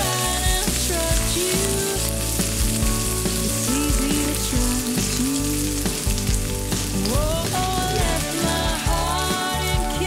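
Shallots and garlic sizzling in hot oil in a wok and stirred with a wooden spatula, with raw chicken pieces added about halfway through. A song with a gliding melody plays over it.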